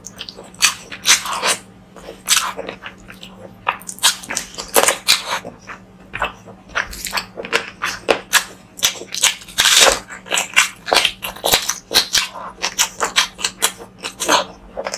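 Close-miked eating: a mouth chewing handfuls of rice and curry, with rapid, irregular wet smacks, clicks and crunches.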